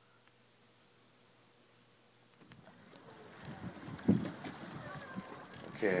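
Near silence for about two and a half seconds, then faint irregular rustling with a few soft knocks, growing louder toward the end.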